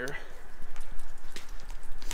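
Water running out of a pressure-washer hose end and splashing onto a concrete floor in a steady hiss, with a couple of light clicks as the fitting is handled. The coupling's O-ring is missing, so the water leaks out at the connection.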